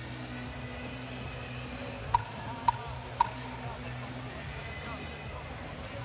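Arena crowd noise with three sharp knocks about half a second apart near the middle, each with a short ring: the timekeeper's ten-second warning that the round is about to end.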